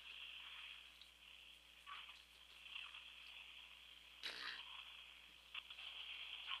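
Near silence: faint steady telephone-line hiss from a call on hold, with a couple of brief soft noises about two and four seconds in.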